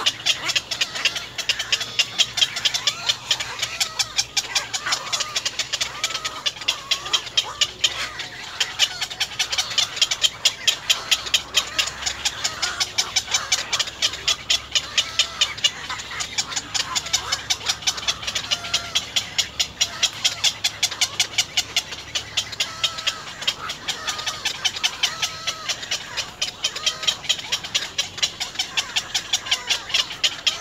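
Birds calling: many short chirps over a fast, continuous ticking chatter.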